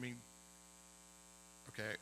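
Steady electrical mains hum, a stack of even unchanging tones, heard in a pause between a man's words. A spoken word is at the very start and speech starts again near the end.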